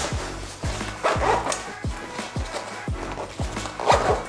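Background music with a steady, deep beat.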